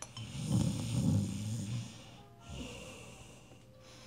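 A man snoring once, a low snore lasting about a second and a half, over faint background music.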